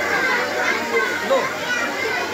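A crowd of children talking and calling out at once: a dense, steady babble of young voices.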